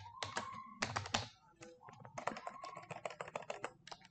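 Computer keyboard being typed on: irregular runs of quick key clicks with a short pause about a second and a half in, then a denser run of keystrokes.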